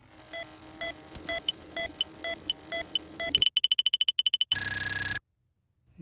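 Cartoon electronic sound effects: short bleeps at several pitches about twice a second for a few seconds, then a fast run of high beeps about ten a second, ending in a short burst of hiss with a tone in it.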